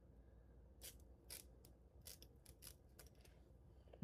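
Small scissors snipping through the excess lace along the front of a lace wig: about ten faint, sharp snips at irregular spacing.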